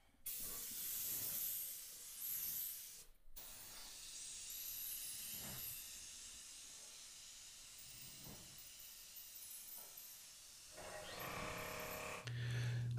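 Faint steady hiss of a 3M Performance spray gun with a 1.4 tip, atomising 2K primer with compressed air as it is sprayed onto a truck bedside. The hiss breaks off briefly about three seconds in, runs weaker through the middle, and grows louder again near the end.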